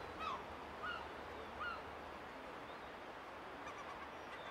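Faint bird calls: three short gliding calls in the first two seconds, over a low background hiss.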